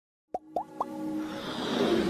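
Animated logo-intro sound effects: three quick pops, each sliding up in pitch, about a quarter second apart, followed by a whoosh that swells and grows louder.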